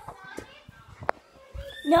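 Scattered knocks and thumps of a handheld phone being moved about, with one sharp click about a second in; right at the end a child starts a loud shout of "No".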